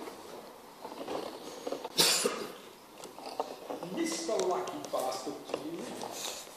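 Indistinct background conversation of men's voices, with one sharp cough about two seconds in.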